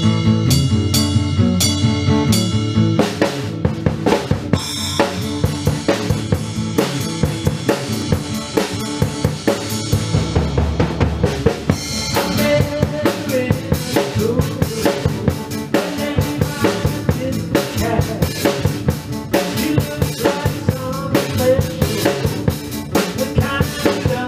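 A drum kit and an acoustic guitar playing a song together, the drums keeping a steady beat on bass drum, snare and cymbals over the guitar's chords.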